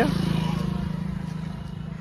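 A motorcycle engine running with a steady low pulsing note, fading gradually over two seconds as if moving away.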